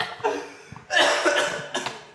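Men laughing hard in breathy, cough-like bursts, loudest about a second in.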